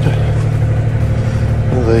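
An engine running steadily: an even, low drone.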